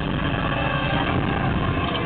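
Loud, steady mechanical rumble from the sci-fi sound effects of a video interlude's soundtrack, played through concert PA speakers.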